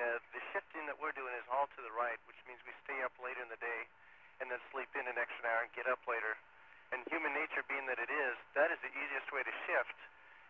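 Speech only: a crew member answering over a narrow-band space-to-ground radio link, the voice thin and cut off below and above the speech range.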